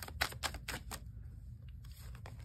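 Oracle cards being handled and drawn by hand: a quick run of light, irregular clicks and taps that thins out after about a second.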